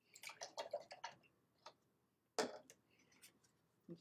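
Quiet handling of a watercolour brush and paper: a run of light scratchy strokes in the first second, then a single crisp paper rustle about two and a half seconds in as the sheet is picked up.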